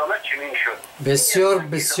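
Speech only: men talking, with a thinner, quieter voice at first and a louder, fuller male voice taking over about a second in.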